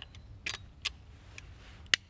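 Metal clicks and clacks from the Sterling Mk.6 9mm carbine's folding stock being swung forward and settled under the receiver. About five sharp clicks, the loudest about halfway through and just before the end.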